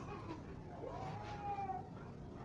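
A single faint, drawn-out call, rising in pitch and then held for about a second, in the middle of a quiet background.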